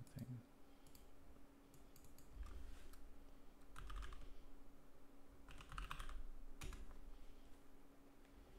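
Typing on a computer keyboard: several short bursts of key clicks, with pauses between them.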